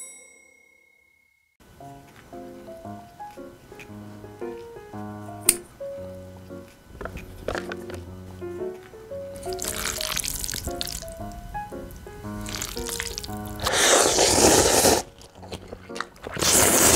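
A fading chime, then light background music with a bouncy, plucked melody. From about nine seconds in, wet noodle-slurping eating sounds come in several bursts over the music, the longest and loudest near the end.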